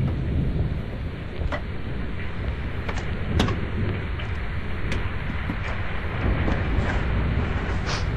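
A steady low rumble runs under the scene, with a few brief sharp clicks or knocks scattered through it, the loudest about three and a half seconds in.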